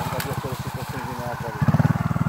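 Trials motorcycle's single-cylinder engine running at a low, steady, fast pulsing beat while the stuck bike is hauled up a steep slope, getting louder near the end.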